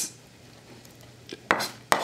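Two sharp clicks of kitchen utensils knocking, about a second and a half in and again just before the end, after a quiet stretch.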